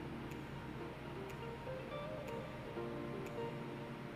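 Background music: a light melody over a steady ticking beat.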